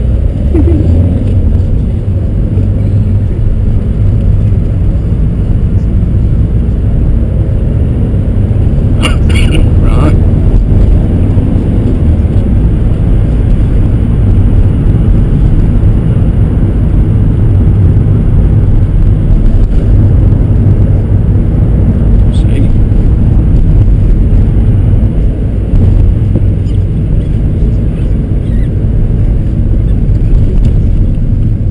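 Steady low rumble of a car's engine and tyres heard inside the cabin while driving.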